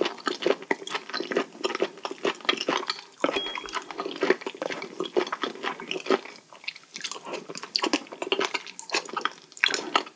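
Close-miked wet chewing and slurping of raw sea cucumber intestines and raw fish, a dense run of quick mouth smacks and clicks.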